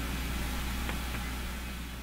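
Steady low hum under a faint hiss, slowly fading: microphone background noise in a pause between speakers, with two faint clicks about a second in.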